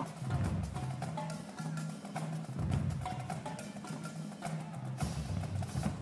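High school marching drumline playing: a quick run of crisp stick strokes on snares and drums over intermittent low drum tones, at a low level.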